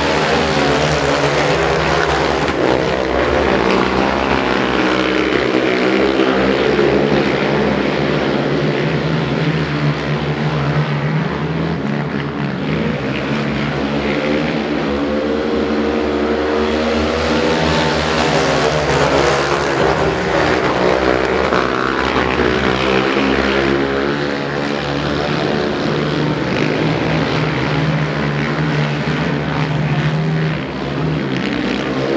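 Engines of three racing quads (sport ATVs) revving hard together, their pitch rising and falling over and over as they accelerate down the straights and ease off into the bends.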